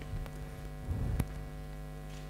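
Steady electrical mains hum from a live sound system, with a soft knock and a sharp click about a second in.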